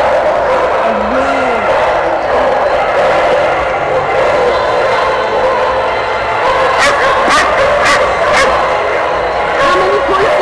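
Many dogs barking together in a large indoor hall, continuous and loud, with people's voices mixed in. Several sharp knocks come in quick succession about seven to eight and a half seconds in.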